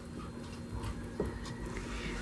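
Faint sound of a wooden spoon stirring thick chile sauce with nopales in a pan, with one small click a little past the middle.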